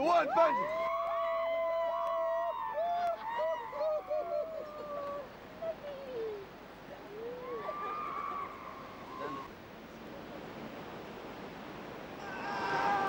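A person screaming during a bungee jump: a long high-pitched yell that breaks into quick wavering cries and slides down in pitch, then two shorter rising yells, over a steady background rush.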